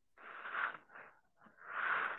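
A person breathing audibly into a microphone, with no voice: a breathy hiss a quarter second in, a shorter one just before the middle, and another building near the end.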